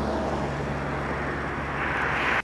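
A steady low engine hum under an even rushing noise, as of a vehicle running close by.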